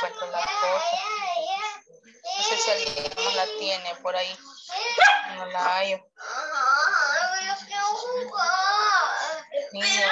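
A high-pitched voice, like a young child's, vocalizing without clear words, in several stretches broken by short pauses.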